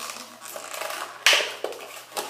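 Plastic packaging of a small eyeshadow palette crackling as it is handled, with one louder crackle just over a second in.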